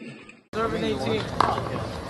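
Sound fades to a moment of silence at an edit about half a second in, then people talking and one sharp smack about a second and a half in, a ball struck in a wall-ball game.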